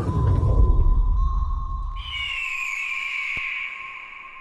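Cinematic intro sound design: a low swell of noise over a steady high tone, and about two seconds in a higher tone slides down in pitch and holds as the low swell fades.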